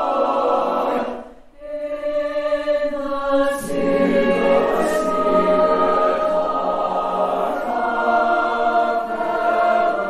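Mixed choir singing a slow passage in held chords. There is a brief gap about a second and a half in, and from about three and a half seconds the sound is fuller, with lower voices in.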